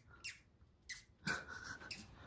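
Short, sharp breaths through a person's nose: two brief sniff-like puffs, then a longer one a little past the middle carrying a faint whistle.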